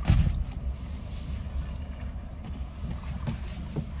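A full five-gallon plastic water jug set down in a car with a heavy thump, followed by a steady low rumble and a couple of faint knocks near the end.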